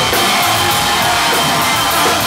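Live country band playing loudly in a club, with the drum kit to the fore, recorded from inside the crowd.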